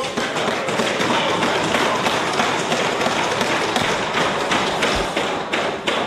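Many members thumping their hands on wooden desks in a dense, overlapping clatter, the Westminster-style parliamentary form of applause. It runs on without a break, as loud as the speech around it.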